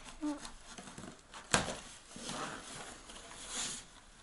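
A cardboard parcel being cut open and unpacked: a kitchen knife works through the packing tape, with a sharp click about one and a half seconds in, then the cardboard flaps and contents rustle and scrape.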